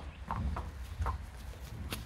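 A horse walking on a dirt yard: a few soft, irregular hoof steps.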